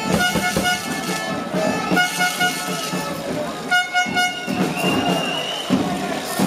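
A horn sounding short, same-pitched toots in quick groups of three, repeated about every two seconds over a shouting boxing crowd. A single high, steady whistle-like tone is held for about a second near the end.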